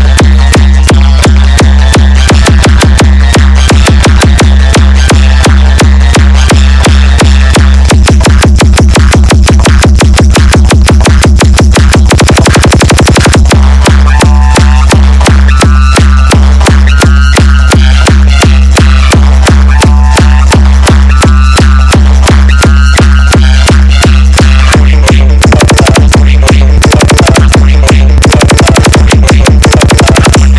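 Loud Indian DJ 'hard vibration' remix: electronic dance music with a constant deep bass and fast, driving beats, broken by rapid drum rolls around the middle and again near the end.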